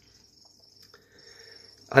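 Crickets chirping: a faint, steady high trill that carries on through the pause, with a soft breath just before speech resumes.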